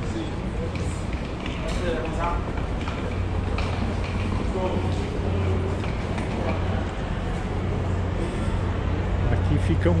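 Ambience of a busy, echoing bus terminal concourse: a steady low hum under indistinct voices of passing travellers.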